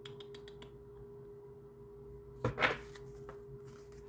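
Oracle cards being handled and shuffled: a run of light clicks, then a short, louder shuffle about two and a half seconds in. A steady faint hum runs underneath.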